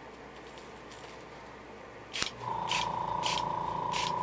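Airbrush trigger tripped fast at high air pressure to spatter paint: after a quiet first half, a click, then short bursts of air hiss about every half second. A steady motor whine with a low hum sets in under the bursts, typical of the airbrush's air compressor running.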